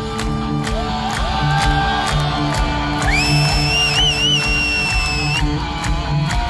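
Heavy metal band with a symphony orchestra playing live, loud: a steady drum beat under distorted guitars. About three seconds in, a high note rises, is held with a wavering vibrato, and ends about two and a half seconds later.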